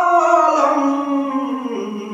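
A man's unaccompanied voice singing a Kashmiri Sufi manqabat, holding one long note that slides slowly down in pitch.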